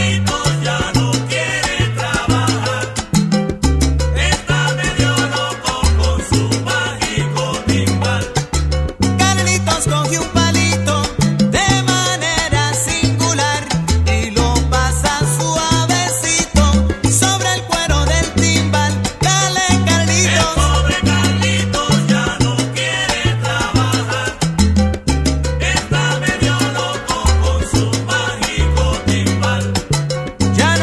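Instrumental stretch of a 1980 salsa band recording, without singing: a bass line moving in short held notes under the band, with percussion throughout.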